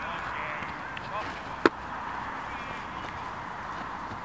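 Steady outdoor background noise with faint distant voices, and one sharp knock a little past one and a half seconds in.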